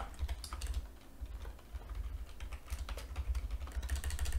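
Typing on a computer keyboard: irregular runs of short key clicks, with a dull low thud under the keystrokes.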